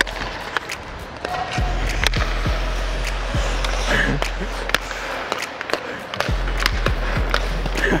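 Ice hockey skates scraping and carving across the rink, with repeated sharp clacks of sticks and puck, over background music.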